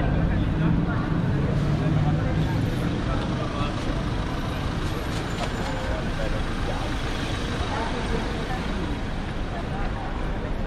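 City street traffic with a heavy vehicle passing close by: a low engine drone, loudest in the first few seconds and then fading, under steady street noise and the voices of passersby.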